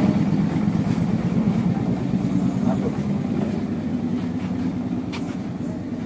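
A motor vehicle engine running steadily at a low, even pitch and slowly growing fainter.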